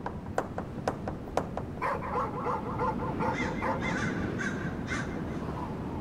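Crows cawing repeatedly from about two seconds in, over a low rumbling ambience. A run of sharp clicks comes in the first second and a half.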